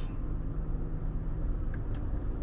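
Steady low rumble and hum inside the cabin of a running Toyota Highlander SUV, with two light clicks near the end.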